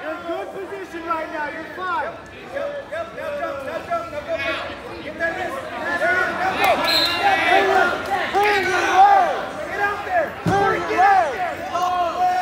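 Many voices of spectators and coaches shouting over one another, loudest from about six to nine seconds in, with a single thump near the end.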